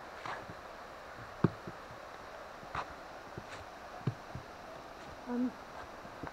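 Irregular footsteps on a forest trail, a few scuffs and knocks with one sharp knock about a second and a half in, over the steady rush of a waterfall.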